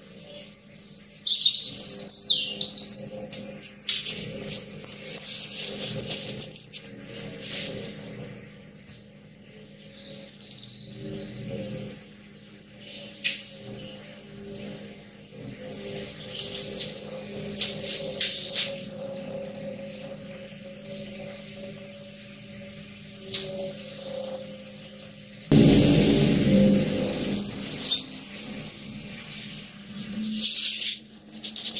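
A low, steady droning hum of several tones, one of the unexplained 'strange sounds' reported worldwide in 2017, in an amplified, noise-reduced recording. Birds chirp over it near the start and again near the end, and the noise swells louder for a few seconds shortly before the end.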